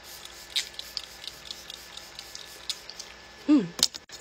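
Fine-mist setting spray pump bottle spritzed onto the face: a few short, soft hisses, the clearest about half a second in.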